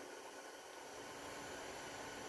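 Faint, steady hiss of room tone and recording noise, with no other distinct sound.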